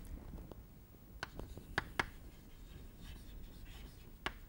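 Chalk writing on a chalkboard: a few sharp taps of the chalk against the board, the clearest between about one and two seconds in, with faint scratching strokes in between.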